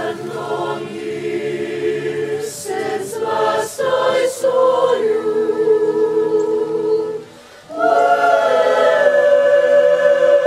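A choir singing slow, sustained chords, with brief sibilant consonants early on. Near the end it breaks off briefly, then comes back louder on a held chord.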